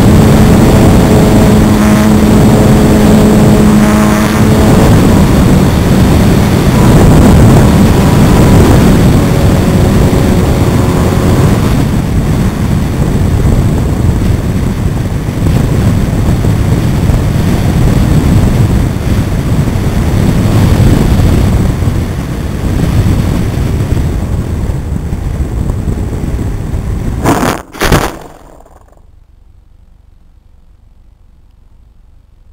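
Airflow rushing over a wing-mounted camera on an electric RC plane in flight. The electric motor and propeller whine is heard for the first few seconds and again briefly about ten seconds in, and the rushing slowly eases as the plane comes down. Near the end a loud knock marks the touchdown, with the plane catching in a hole in the field, and then the sound drops away.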